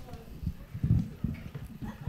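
Handling noise from a handheld microphone as it is lifted from its stand: a handful of short, dull low thumps and knocks.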